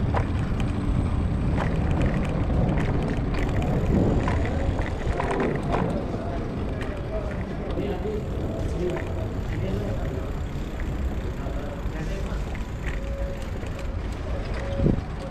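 Bicycle riding over stone paving: a steady low rumble with scattered rattles and clicks from the bike.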